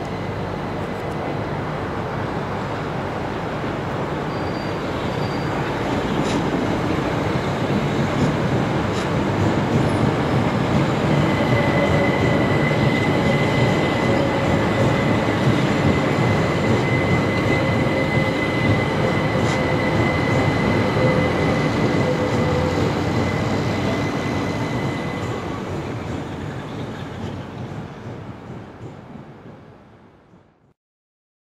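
An electric multiple unit train passing slowly on a curve, its rolling noise building over the first ten seconds. A steady high-pitched wheel squeal runs through the middle of the passage. The sound fades out near the end.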